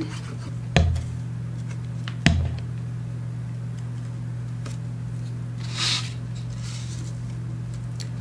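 Crafting handling sounds on a table: two light knocks in the first few seconds as the plastic glue bottle is handled and set down, then a short paper rustle about six seconds in as the glued strip is pressed into place, over a steady low electrical hum.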